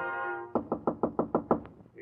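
A held orchestral bridge chord ends about half a second in, then comes a quick run of about eight knocks on a door.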